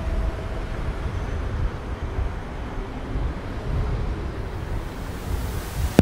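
Low, uneven rumble of wind buffeting the microphone over a steady hiss of street background noise.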